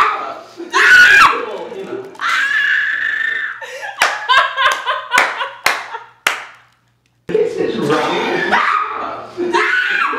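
Two women laughing hard, with shrieks and a long held cry, then a quick run of sharp, short bursts near the middle. The sound cuts out abruptly for under a second and the laughter picks up again.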